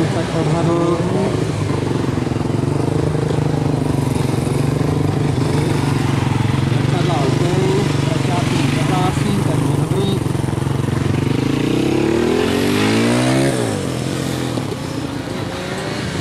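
Suzuki GSX-R 750 inline-four engine running at steady moderate revs as the motorcycle threads a slow cone course. About twelve seconds in, the revs rise and then fall.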